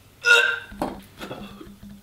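A man gagging at the taste of canned dog-food pâté: one loud retch about a quarter of a second in, then a couple of shorter, weaker heaves.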